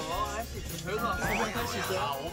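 Background music under Korean speech from a variety-show clip, with a short tone that holds and then glides sharply upward about a second in.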